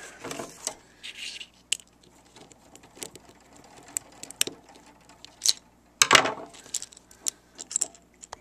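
Scattered clicks, taps and light clatter of tools and small parts being handled on a desk, with a louder rattle about six seconds in.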